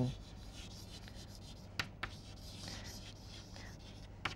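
Faint scratching of chalk writing on a blackboard, with two light clicks about two seconds in.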